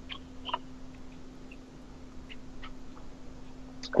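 A few faint, scattered clicks of a computer mouse over a steady low electrical hum.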